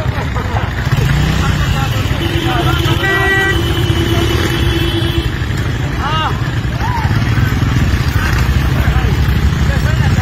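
Motorcycle engine running close by, with a vehicle horn held for about three seconds a couple of seconds in. Voices call out briefly a little later.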